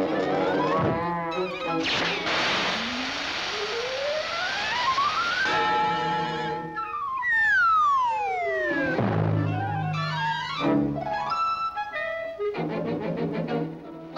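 Orchestral cartoon score with sound effects: a rushing whoosh under a long whistle-like glide rising over about three seconds, then a falling whistle glide a few seconds later, with the orchestra playing around them.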